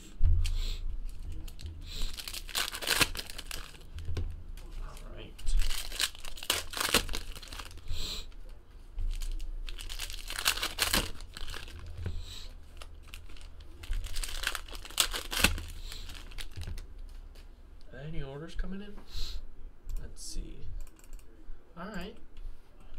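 Foil trading-card pack wrappers crinkling and tearing as packs are ripped open, in repeated bursts of rustling, along with cards being handled and stacked.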